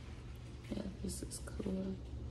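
A woman's soft, under-the-breath speech for about a second in the middle, with a couple of hissing consonants, over a steady low hum.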